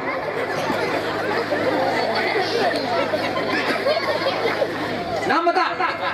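Many people chattering at once, indistinct overlapping voices in a large hall over a steady low hum, with one voice standing out more clearly near the end.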